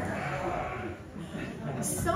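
A roomful of people hissing on request, the hissing dying away within the first second and leaving scattered voices.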